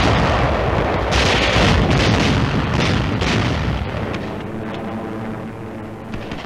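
Battle sounds of artillery explosions and gunfire: a dense, loud run with several sharp blasts between about one and three and a half seconds in. It fades over the last two seconds as a steady hum comes in.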